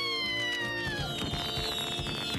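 Silkie, the cartoon silkworm larva, making a high-pitched, cat-like cooing squeal that slides slowly down in pitch and stops about halfway through, over soft music.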